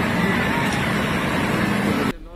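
A diesel bus engine running steadily while the bus is driven, heard from inside the driver's cab, with faint voices in the background.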